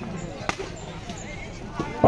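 A single sharp knock of a cricket ball being struck, about half a second in, over a low murmur of crowd voices; a fainter knock follows near the end.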